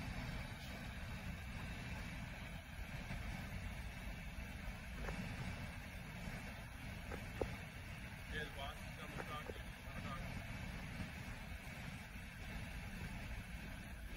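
Low, steady rumble of an idling police patrol car, with a few faint clicks and faint voices in the background.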